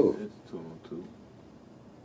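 A man's speech trailing off: the end of a word, a faint low mumble, then a pause of quiet room tone for the last second.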